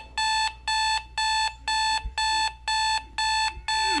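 Electronic alarm clock beeping, one steady high beep repeated about twice a second, going off to wake a sleeper.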